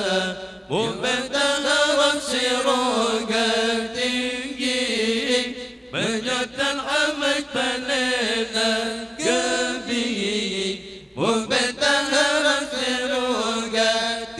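Male Qur'an recitation in a melodic chanted style through microphones, with long, ornamented held notes. New phrases begin about a second in, at about six seconds and at about eleven seconds, each opening with a rising slide after a short breath.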